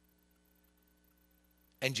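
A faint, steady electrical hum in near silence, then a man's voice starts again near the end.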